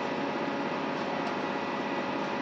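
Steady mechanical hum with a few faint steady tones in it, unchanging throughout.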